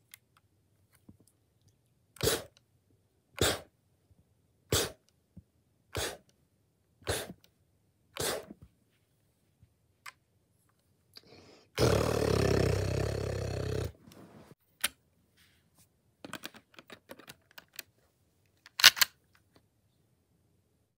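Home-built Lego AK-47 toy gun being fired: six single sharp snaps a little over a second apart, then a two-second rush of noise. Light plastic clicks follow, then a final loud double snap.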